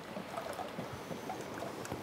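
Quiet room tone: a steady low hiss with a few faint clicks.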